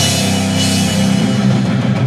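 Live rock power trio playing an instrumental passage: electric guitar, bass and drum kit with cymbals, loud and dense, with a heavy hit at the start and another near the end.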